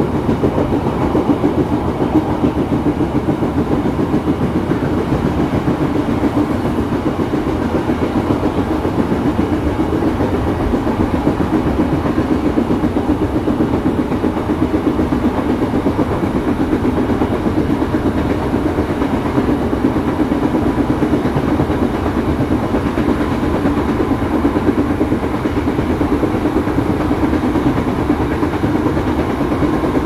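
Steady running noise of a KRL Commuterline electric commuter train heard from inside the carriage: the rumble of wheels on rails as the train travels along the line.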